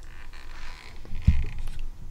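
Handling noise as a plastic record spindle loaded with a stack of vinyl LPs is lifted off a record-cleaning rotator: a soft scraping rustle, then a single dull thump a little over a second in.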